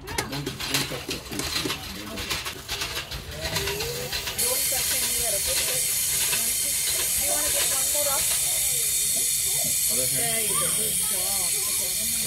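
Water from a push-button faucet running over a hand and splashing into a stainless steel sink: a steady hiss that starts suddenly about four seconds in.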